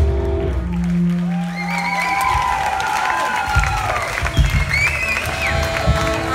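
A live rock band ending a song: a final held note rings out and stops about two seconds in, then the audience cheers and applauds, with wavering high tones from whistles or guitar feedback.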